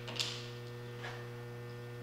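Steady electrical mains hum, with a sharp click about a quarter of a second in and a fainter click about a second in.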